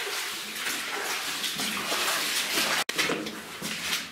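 Footsteps splashing and sloshing through shallow water on a mine tunnel floor, in an uneven walking rhythm. The sound drops out for an instant about three seconds in.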